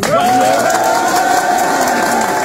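A loud, drawn-out voice held on one pitch, starting suddenly and stopping abruptly after about two and a half seconds, with other voices underneath.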